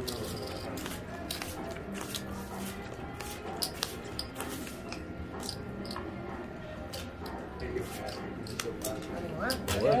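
Blackjack cards being dealt onto a felt table, with many small sharp clicks and snaps from the cards and chips, over a steady background of casino murmur and music.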